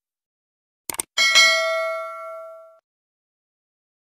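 Sound effect of a subscribe-button animation: a quick double mouse click just before a second in, then a bright bell ding that rings out and fades over about a second and a half.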